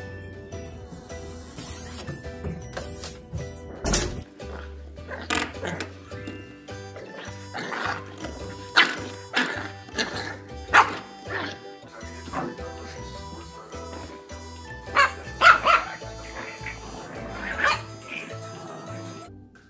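Background music throughout, with a dog barking several times over it, loudest about halfway through and again near the end.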